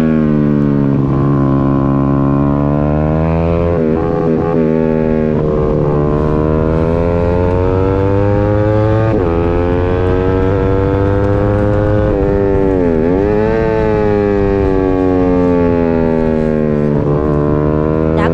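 Racing motorcycle engine of a 150cc sport bike at speed, heard onboard: its pitch climbs and falls again and again as the rider works the throttle and gears through the corners, with a quick sharp drop and recovery about two-thirds of the way through.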